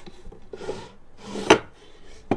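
A wooden mini cabinet's flap door being handled: a soft rubbing scrape of wood on wood, then a sharp knock about one and a half seconds in as the door knocks shut.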